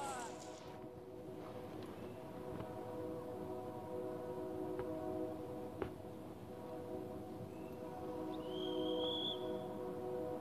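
A horn sounding one long, steady chord of several held notes, with a short high chirp near the end.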